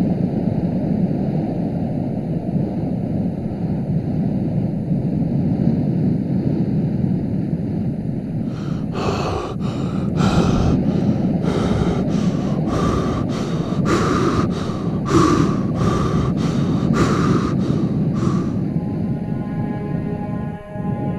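A steady low rumble with, from about nine seconds in, a run of quick, hard breaths, about one and a half a second, lasting some ten seconds, as of a person breathing heavily while running.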